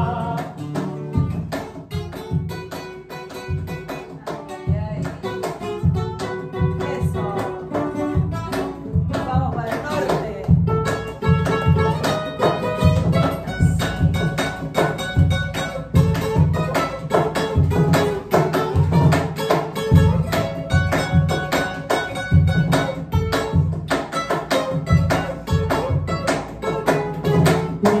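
Classical guitar playing an instrumental Peruvian criollo passage of quick plucked runs and strummed chords, with a cajón beating the rhythm underneath, stronger from about ten seconds in.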